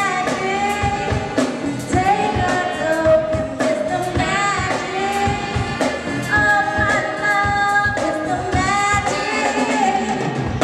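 Live soul and funk band playing: saxophones and electric guitar over bass and a drum kit keeping a steady beat, with a sliding lead melody line on top.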